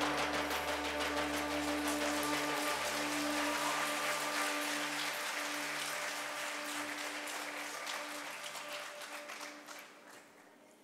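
A held orchestral chord ringing on and slowly fading, under audience applause. The lowest note drops out a few seconds in.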